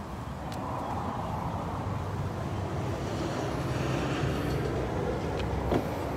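Steady low rumble of outdoor background noise, like road traffic, growing slightly louder, with a few faint clicks about half a second in and near the end.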